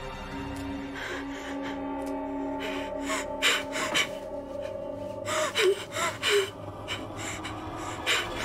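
Sustained, tense background music tones with a person gasping sharply several times, in short breathy bursts between about three and six and a half seconds in.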